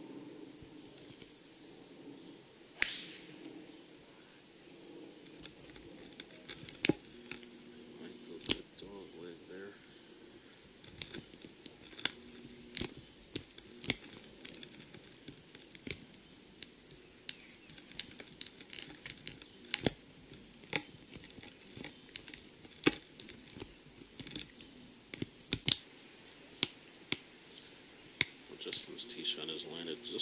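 Golf driver striking a ball off the tee: one sharp, loud crack about three seconds in with a brief ring after it. Scattered light clicks and faint voices follow.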